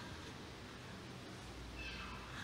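Quiet room tone from the pulpit microphones, with a faint, brief high-pitched mew-like cry near the end.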